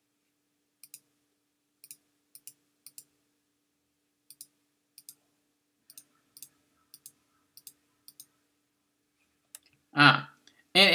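Faint clicking on a computer while searching for a web page: about a dozen short clicks at uneven intervals, most in quick pairs, over a faint steady hum.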